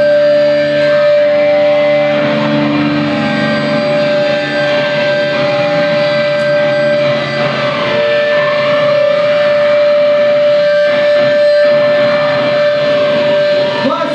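Hardcore band playing live in a club: distorted electric guitar over a single steady held high tone.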